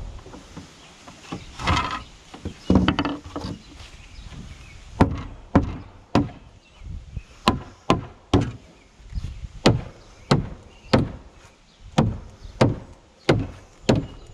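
A short-handled sledgehammer striking the edge of a pressure-treated wooden deck board, about a dozen sharp blows roughly 0.6 seconds apart starting about five seconds in, knocking the board tight into place. Before that, a couple of duller wooden knocks and scrapes as the board is handled.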